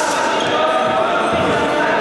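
Echoing sports-hall din of people talking around the fencing floor, with a low thud about one and a half seconds in.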